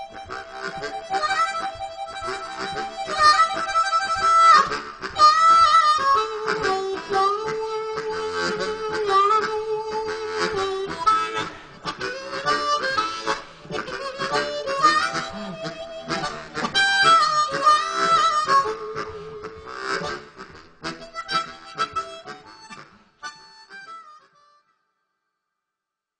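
Suzuki diatonic harmonica playing a tune with long held notes over a steady rhythmic accompaniment. The music stops about 24 seconds in.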